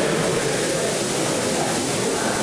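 Indistinct chatter of many people talking at once in a large hall, under a steady hiss.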